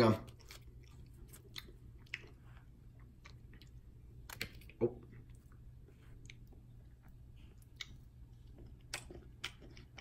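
A person chewing a mouthful of soft sandwich, a bun with peanut butter, jelly, whipped cream and ketchup: faint, scattered wet mouth clicks and smacks, close to the microphone.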